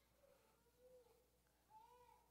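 Near silence, with a few faint, brief pitched sounds that rise and fall, the clearest near the end.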